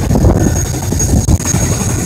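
A large engine running steadily: a heavy low rumble with a constant high-pitched whine over it.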